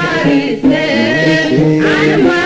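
Music: voices singing a song, with held notes that glide between pitches.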